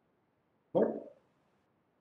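A single short throat noise from the lecturer, sudden and loud, about three quarters of a second in and fading within half a second.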